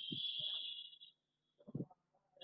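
A high-pitched whistle held for about a second and then stopping, with a few faint low knocks or voice fragments under it.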